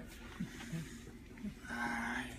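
A man groaning in pain as he walks bent over a walker; the loudest groan comes near the end.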